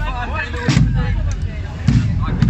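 Slow, regular deep drum beats from a marching band, about one beat every second and a quarter, over crowd chatter.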